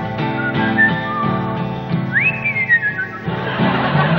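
Acoustic guitar strummed in a steady rhythm with a whistled melody over it. The whistle slides sharply up about two seconds in, then falls away note by note.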